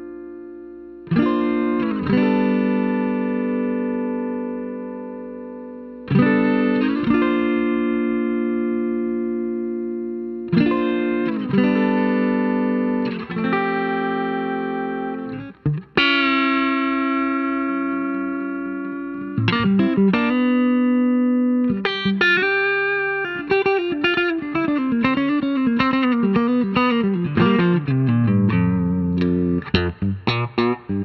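Electric guitar played through an OTA-based compressor pedal (CKK Gears): strummed chords are left to ring with long, even sustain. From about two-thirds of the way in, the playing turns into a quicker run of notes and chords, with a line that steps down in pitch near the end.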